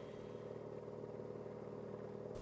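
Faint, steady drone of a motor vehicle engine with a low hum and light road noise.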